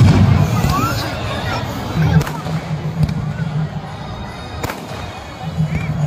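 Aerial fireworks bursting overhead: a loud boom right at the start, then sharp cracks about two seconds in, at three seconds and again near five seconds.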